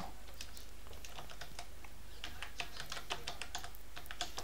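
Computer keyboard typing: a run of irregular keystrokes, busier in the second half, over a steady low hum.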